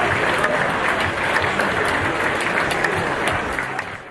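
Audience applauding in a hall: dense, continuous clapping that fades out just before the end.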